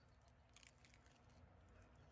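Near silence with faint small clicks, mostly in the first second, of a man biting and chewing a piece of chicken with crunchy skin.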